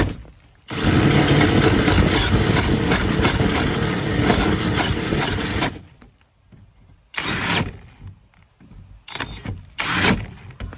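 Cordless drill spinning a 3-inch hole saw that cuts into wooden wall boards at an angle, widening an already-cut hole. It stops for a moment just after the start, then runs for about five seconds. After that it stops, with one short burst about seven seconds in and a few brief ones near the end.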